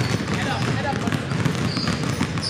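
Several basketballs being dribbled at once on a hardwood gym floor, many overlapping bounces.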